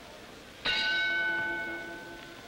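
Boxing ring bell struck once, ringing on with several clear, steady tones that slowly fade: the bell opening the first round.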